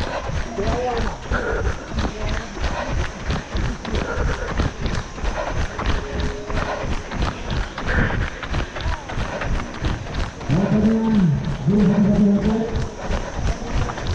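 Footfalls and handling knocks from a runner's handheld action camera on a paved road, repeating at a quick, even rhythm. From about ten seconds in, a loud, wavering, drawn-out voice rises over them.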